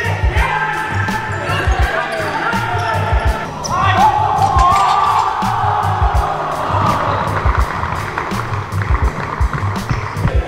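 Backing music with a steady beat and a bass line, with a melody that could be sung.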